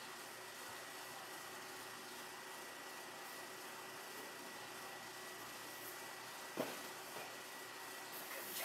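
Faint steady hiss with a thin high-pitched whine, the background noise of the recording, broken once by a brief knock about six and a half seconds in.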